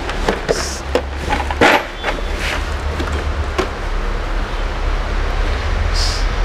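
Clicks and knocks from a hard plastic Stanley socket-set case being handled and opened out, with a few sharp taps in the first couple of seconds and some more later, over a steady low rumble.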